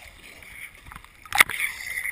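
Sea water lapping and sloshing against a waterproof action camera at the surface, with one sharp hit of water on the housing about a second and a half in, followed by a short rush of water.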